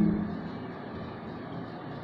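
Steady low background noise, an even room hum, after the last word of a man's speech fades out at the very start.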